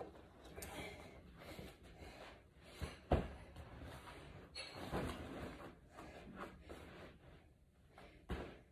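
A folding vinyl panel exercise mat being unfolded and laid down on the floor: rustling and handling noise with a few soft thuds, the loudest about three seconds in.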